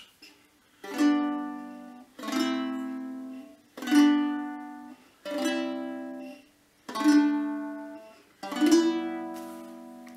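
Six-string early medieval lyre, tuned G-A-B-C-D-E, strummed as six separate chords in turn, with fingers blocking the unwanted strings. Each chord rings out and decays before the next is struck, about one and a half seconds apart.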